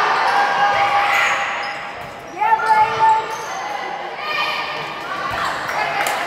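Volleyball rally in a gymnasium: shoes squeaking on the hardwood court, a few sharp smacks of the ball being hit about halfway through, and players and spectators calling out, all echoing in the hall.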